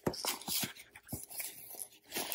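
Crinkling and rustling of heat tape and paper being pulled and smoothed around a cap stretched over a hat-press form, with a few soft handling clicks.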